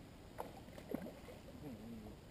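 Water splashing twice as a hooked bass thrashes at the surface while it is reeled in to the boat, with a faint voice near the end.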